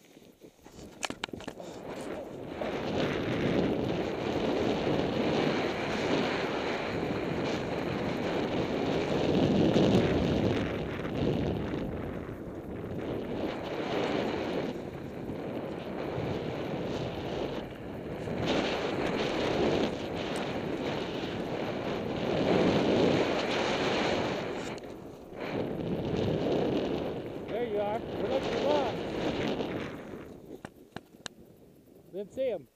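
Wind rushing over a body-worn camera's microphone and a snowboard sliding through powder snow on a run. The noise builds up in the first couple of seconds and eases off briefly a few times.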